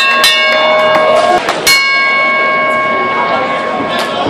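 A metal round bell struck several times, each strike ringing on with a steady clanging tone; the last strike comes about a second and a half in and rings to near the end. Crowd chatter runs underneath.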